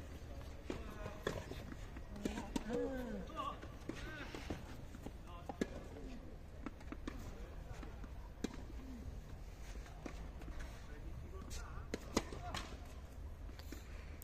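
Tennis ambience at an outdoor clay-court club: scattered single knocks of tennis balls being struck or bouncing, with faint distant voices between them.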